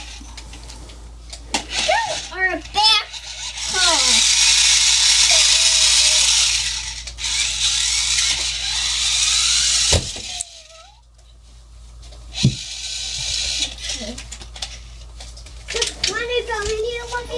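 A young child's voice briefly, then a loud, steady hiss lasting about three seconds, a second one right after it, and a fainter one near the end, with a single knock between them.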